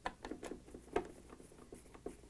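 A hand-held Phillips screwdriver driving screws into a plastic door hinge gives a string of small, irregular clicks and ticks. The loudest click comes about a second in.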